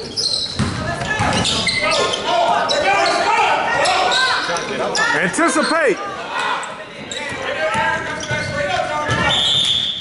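Basketball game in a gym: a ball dribbled on the hardwood floor, sneakers squeaking, and indistinct shouts from players and spectators, echoing in the large hall. A short referee's whistle near the end.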